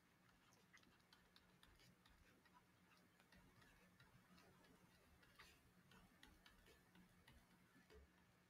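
Near silence with faint, irregular light ticks: a stylus tapping on a tablet screen while drawing tick marks and numbers. A faint steady low hum is under it.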